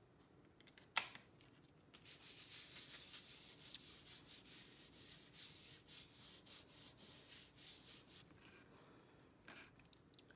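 A single sharp tap about a second in, then about six seconds of hands rubbing back and forth over a cardstock card front, pressing a freshly glued layer down so it sticks.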